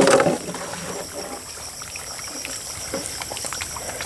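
Tilapia feeding at the surface of a pond: small splashes and a trickling of water, with a short louder splash right at the start.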